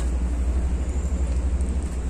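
Low, steady rumble of wind buffeting the microphone outdoors, flickering but without a break.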